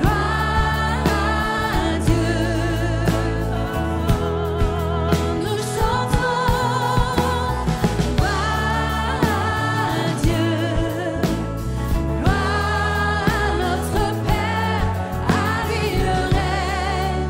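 Live worship band playing a French worship song. Female lead and backing singers sing over keyboard, electric and acoustic guitars, bass and drums.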